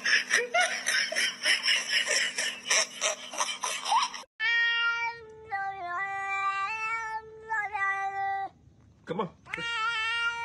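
For about four seconds a dense crackling noise with many quick clicks, then a domestic cat yowling in long drawn-out calls whose pitch steps up and down. It stops briefly near the end, then starts another long yowl.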